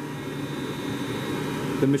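Steady low hum with a faint constant high whine, even throughout, like ventilation or machinery running; a man's voice begins right at the end.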